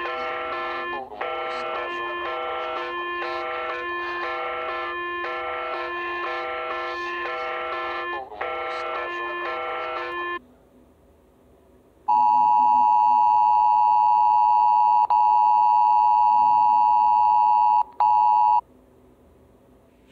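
An emergency alert alarm soundtrack played back through the phone. First comes about ten seconds of a repeating electronic tone melody. After a short pause a loud, steady alert tone sounds for about six seconds, breaks briefly twice, and cuts off abruptly.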